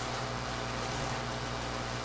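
Room tone: a steady hiss with a low electrical hum underneath, and no distinct event.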